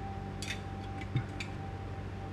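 Steady background hum with a few light clicks and a short rustle about half a second in.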